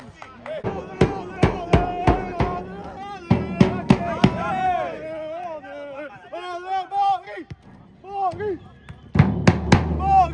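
A large handheld bass drum beaten by a supporter, about two strikes a second at first, sparser in the middle and a quick run of hits near the end, with men's voices chanting over it.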